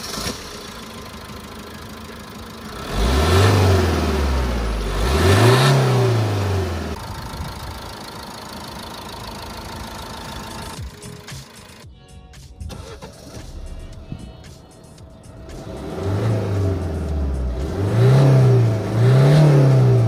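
Alfa Romeo MiTo's 1.3 JTDm four-cylinder turbodiesel started and idling, revved twice a few seconds in and three more times near the end.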